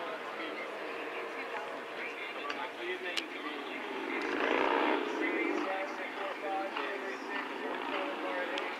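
Murmur of background voices and chatter from the crowd, with no clear words. About four and a half seconds in there is a brief louder swell of sound.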